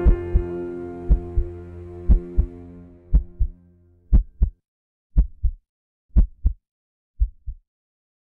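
Heartbeat sound, a double lub-dub thump about once a second, eight beats in all. Sustained music fades out over the first half, leaving the heartbeat alone; the last beat is softer.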